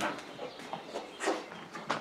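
A dog sniffing at a scent can while searching for a target odour: a handful of short, separate sniffs.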